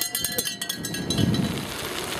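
Wind rushing over the microphone of a camera carried on a moving bicycle, with a rapid, even ticking in the first part.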